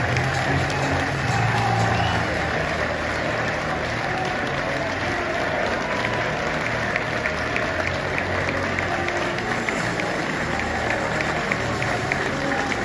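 Stadium crowd applauding and cheering with music playing over it; sharp individual claps stand out more in the second half.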